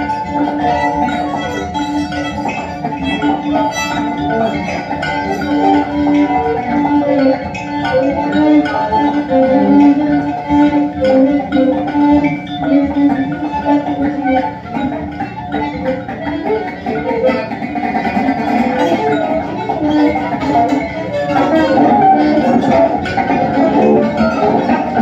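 Live free improvisation on kalimba, violin, alto saxophone and electric guitar: a stream of short, ringing kalimba notes over held, sustained tones.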